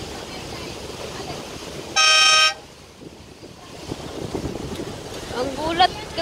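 A boat horn gives one short, loud toot about two seconds in, over a steady rush of water and wind.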